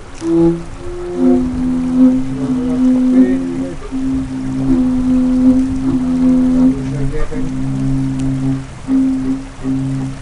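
Indigenous Amazonian wind instruments sounding long, low held notes in two parts together, each note lasting about a second before a short break and the next.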